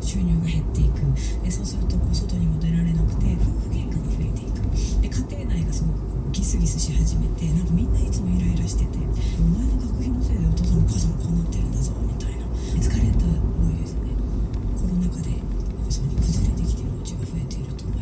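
Steady low rumble of a car's engine and tyres heard inside the moving car, under muffled low-pitched talk.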